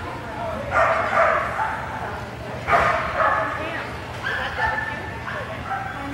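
A dog barking and yipping excitedly in three loud bursts during an agility run.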